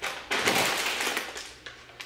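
Plastic frozen-food bags crinkling as they are handled and picked up. The rustle starts just after the beginning and dies down over about a second.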